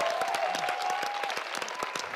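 A studio audience and contestants applauding: dense, rapid hand-clapping with a few voices calling out over it in the first part.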